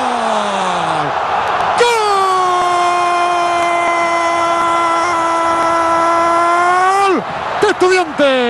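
Football TV commentator's long, drawn-out goal scream. A first held shout falls in pitch and breaks off about a second in, then a second shout is held at one steady pitch from about two seconds in until near the end, over the noise of a stadium crowd.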